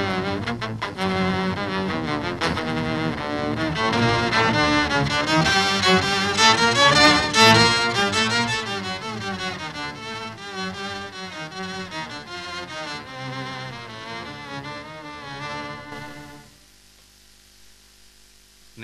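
Electric violin bowed through a dark pedal-board effect that makes it sound like a hundred cellos, played as a flowing, moving phrase. It swells to its loudest about seven seconds in, then fades and stops about a second and a half before the end.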